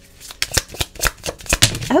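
Tarot cards being shuffled and handled, a quick, irregular run of sharp clicks and flicks.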